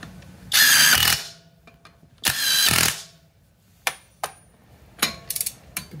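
Uaoaii brushless cordless impact wrench hammering on a car wheel's lug nut at its lowest torque setting, in two short bursts about a second and a half apart. A few light metallic clicks follow.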